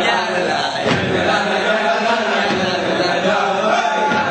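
A group of male voices chanting or singing together in unison, steady and unbroken.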